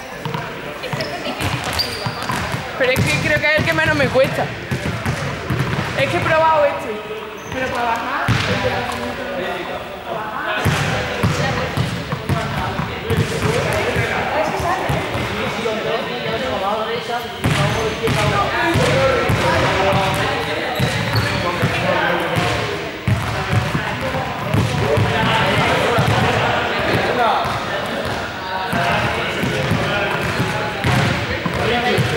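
Several young people talking and calling out in a large echoing sports hall, with balls bouncing on the hard court floor.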